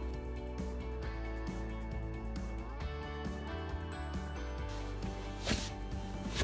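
Background music with steady held notes, and a short hiss-like noise about five and a half seconds in.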